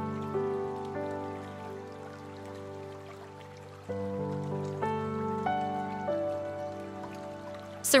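Soft background music of sustained, held notes that slowly fade, with a new chord coming in just before the midpoint and the notes shifting a few more times after it.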